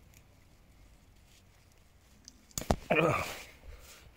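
Weeds being torn out by hand: quiet at first, then about two-thirds of the way in a sharp snap. It is followed at once by a short, loud vocal sound.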